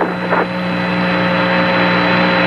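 Apollo 11 lunar-surface radio downlink static: a loud, even hiss with a steady hum of several held tones, in a pause of the astronaut's voice transmission.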